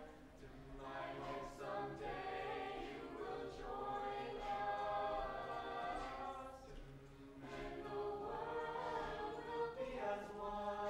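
Mixed-voice a cappella group singing in harmony, voices only, with long held chords and a low voice sustaining the bottom notes beneath the melody.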